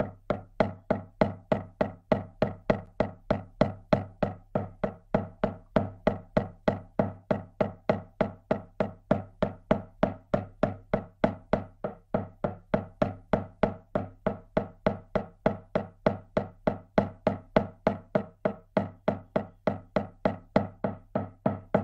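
Shamanic journey drumming: a hand drum struck in a fast, even, unbroken beat.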